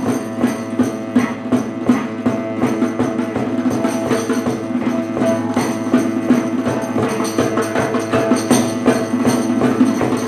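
A small early-music ensemble playing a lively tarantella: plucked lute and bowed bass strings under a melody, driven by steady hand percussion on every beat.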